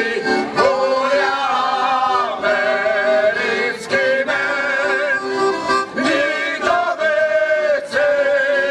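A small folk vocal group, mostly men, singing a Slovak folk song together with piano accordion accompaniment, in long held phrases.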